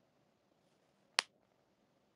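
A single short, sharp click about a second in, against a quiet room.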